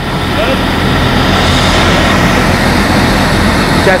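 Fire truck engine running steadily close by, a constant low drone with a broad rushing noise over it.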